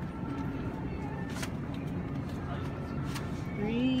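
Supermarket background with a steady low hum and faint voices, and a few light knocks as plastic gallon milk jugs are loaded into a wire shopping cart.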